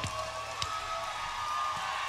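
A live rock band's song has just stopped, and a faint held note rings on quietly over low background noise.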